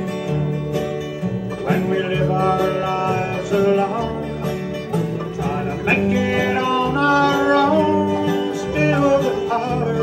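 Live bluegrass band playing: acoustic guitars, mandolin and five-string banjo over a plucked upright bass line, at a steady even volume.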